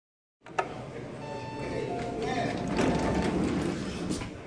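An Otis elevator call button clicks once, then the elevator's doors slide open: a rising whoosh and rumble that peaks about three seconds in. Faint steady tones and background voices run underneath.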